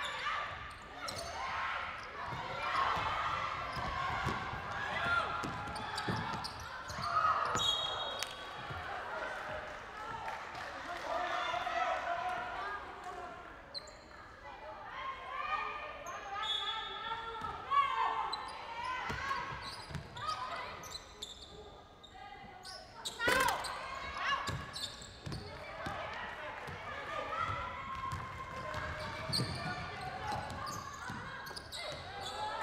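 Live basketball court sound in a large echoing hall: a ball bouncing on the hardwood floor, players and benches calling out unintelligibly, and a few brief high squeaks from the play on the court.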